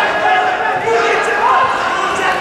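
Voices calling out in a large sports hall, with dull thuds of wrestlers' feet and bodies on the mat.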